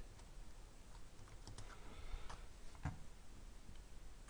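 Typing on a computer keyboard: a few faint, scattered key clicks, with one slightly louder tap about three seconds in.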